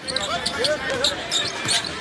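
Basketball being dribbled on a hardwood court, set in arena crowd noise and scattered voices.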